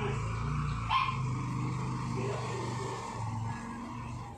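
A dog barks once, sharply, about a second in, over a steady low hum.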